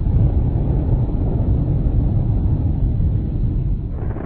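Explosion sound effect: a loud, deep rumble that sets in suddenly and rolls on steadily.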